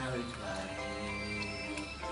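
Background music with held melodic notes and a light ticking beat.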